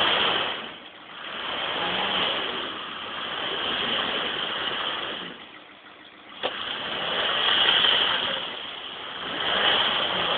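Off-road vehicle's engine revving hard in repeated swells as it works through deep mud. It drops off about a second in and again around six seconds, with a sharp knock about six and a half seconds in.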